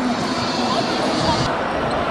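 Table tennis rally: a ball clicking off paddles and the table.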